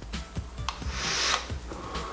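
A drag on a mesh-coil rebuildable tank atomizer (Vandy Vape Kylin M with a 0.13-ohm coil at 40 watts): a breathy rush of air and vapour through the atomizer, then the vapour blown out.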